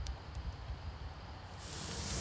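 Water poured into a hot cast iron scald pot hissing as it flashes to steam, starting about one and a half seconds in after a quiet spell. The hiss is the sign that the pot is hot.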